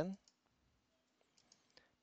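A few faint computer mouse clicks about a second and a half in.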